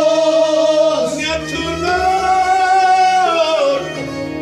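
A man sings a Kashmiri Sufi kalam in long, drawn-out notes, with a steady instrumental drone beneath.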